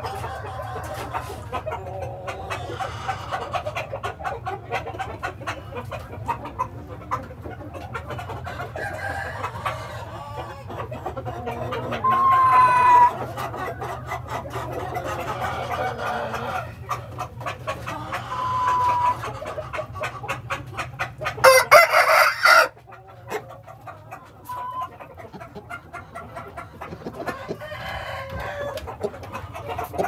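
Aseel chickens in a pen: hens clucking continuously while the rooster crows, with a few short, louder calls. The loudest is a harsh call of about a second, roughly two-thirds of the way through.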